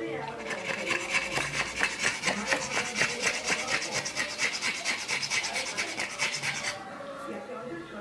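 A pug panting rapidly with its tongue out, a fast, even rasping rhythm that stops about seven seconds in.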